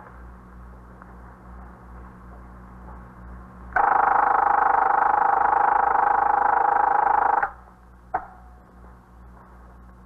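Telephone bell ringing in one long, steady ring of nearly four seconds, starting a few seconds in. About a second after it stops, a single sharp click like a receiver being lifted. A low hum from the old recording runs underneath.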